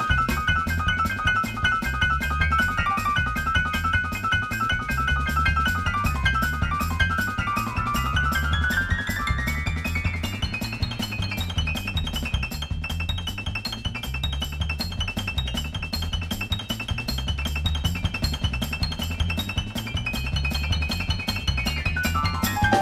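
New Orleans funk band playing an instrumental passage: upright piano over bass guitar, drum kit and percussion. The piano plays a fast repeating high figure, climbing higher about eight seconds in and staying up there over a steady bass line and drum groove.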